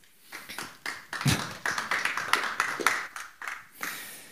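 Audience applause, with sharp separate claps: a few scattered at first, filling in after about a second, then thinning out near the end.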